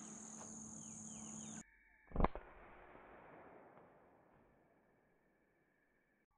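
A single .22 rifle shot about two seconds in, dull and muffled, with an echo trailing off over the next two seconds. Before it, a steady high insect drone that cuts off suddenly.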